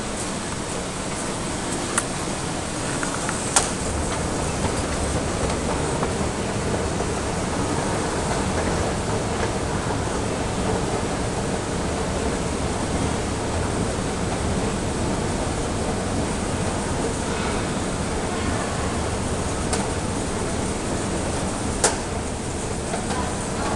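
Escalator running with a steady mechanical hum and noise, broken by a few sharp clicks, the loudest about three and a half seconds in.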